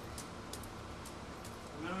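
Faint soft taps and scuffs of a hacky sack game on a carpeted floor, over a low steady room noise; a man's voice starts near the end.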